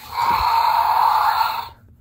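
Recorded dinosaur roar from the Battle Chompin Carnotaurus action figure's built-in sound feature, played through the toy's small speaker. It lasts about a second and a half, is loud, and cuts off suddenly.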